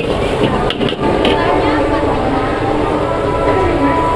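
Steady rush of a high-pressure gas wok burner at full flame under a wok of frying capcay, with a few short clanks of the metal ladle early on, over the chatter of a crowd.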